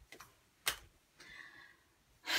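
Small objects being handled on a tabletop: a few faint light clicks, a sharper click about two-thirds of a second in, then a soft brief rustle.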